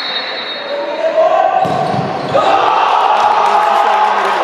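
Players' and spectators' voices shouting in a large echoing sports hall, with a sudden knock of a futsal ball being struck about one and a half seconds in. The shouting grows after the kick.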